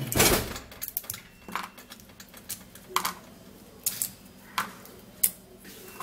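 Dried uyayak (aidan fruit) pods being snapped into pieces by hand: a crackle at the start, then single sharp cracks and clicks about once a second.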